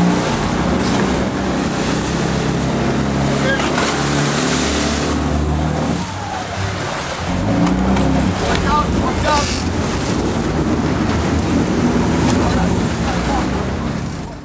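Boat engine running steadily under the rush and splash of churning water, with short shouts now and then.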